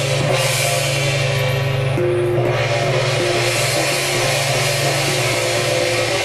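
Taiwanese temple-procession music: drums, cymbals and a gong beating steadily, with a stepping melody line above them.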